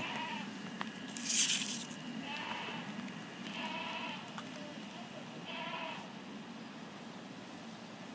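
Faint bleating animal calls, three short pitched calls spaced a second or two apart, preceded by a brief rustle about a second in.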